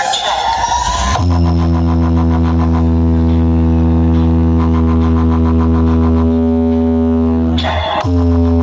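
A large outdoor DJ speaker rig plays loud music. A rising pitched glide in the first second gives way to a long, steady, deep bass drone held for about six seconds, which breaks off briefly near the end.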